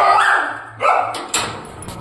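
A small fluffy pet dog whining in two drawn-out high calls, the second about a second after the first, as it jumps up at a person.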